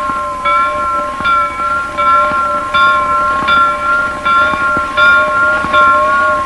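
A church bell ringing in quick repeated strokes, about one every three quarters of a second, its tone hanging on between strokes: the bell calling the faithful to Mass.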